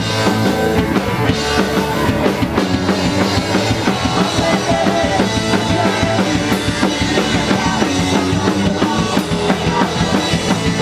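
Live rock band playing a fast, steady song: electric guitar and bass guitar through amplifiers over a drum kit, with the kick drum and snare marking the beat, and the guitarist singing into the microphone.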